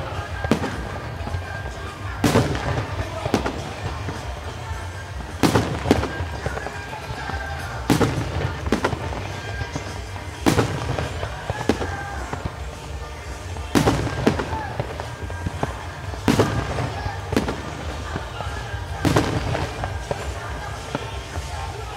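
Aerial fireworks shells bursting, a sharp bang every two to three seconds with weaker reports in between.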